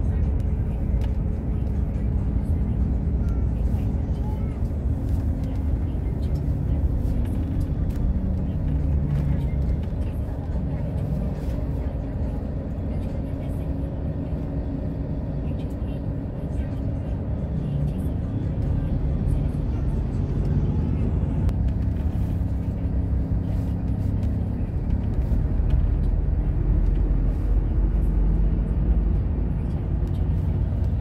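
Steady low rumble of a moving vehicle's engine and road noise, heard from inside the cabin. It grows a little louder in the last few seconds, with faint voices and music underneath.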